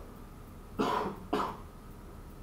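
A man coughing twice in quick succession.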